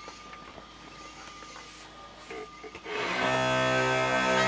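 Faint handling sounds, then about three seconds in a set of uilleann pipes starts up: steady drones with the chanter sounding over them.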